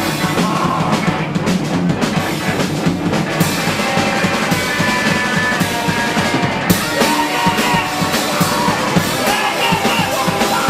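A live rock band playing loud: electric guitars and a pounding drum kit, played close up in a small room.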